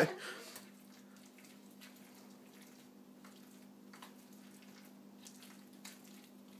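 Faint wet squishes and scattered small clicks of berries being mixed with Crisco and sugar in a bowl for akutaq (Eskimo ice cream).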